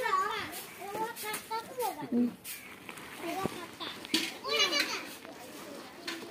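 Children's voices talking and calling out in high-pitched chatter, with a few short clicks in between.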